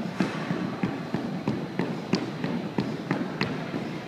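A 2-inch battle rope being whipped in quick alternating waves, its slack slapping the hardwood gym floor in a fast, even run of slaps, about three a second.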